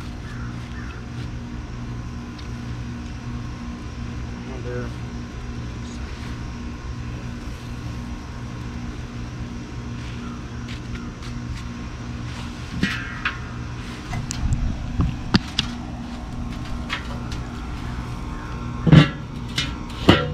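A steady low mechanical hum runs throughout, with a few light knocks. About a second before the end comes a sharp metal clank as the charcoal kettle grill's metal lid is set back on the bowl.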